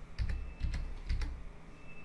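Computer keyboard being typed on: a few separate keystrokes in the first second or so, then quieter.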